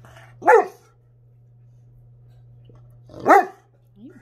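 A Newfoundland dog barking twice, two single deep barks about three seconds apart.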